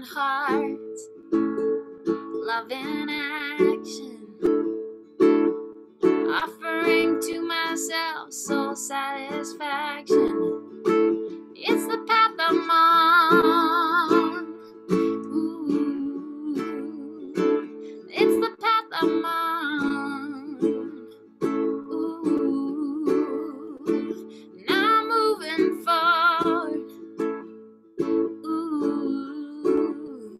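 A woman singing slow phrases with held, wavering notes over a steadily strummed acoustic string instrument. Between the phrases only the strummed chords are heard.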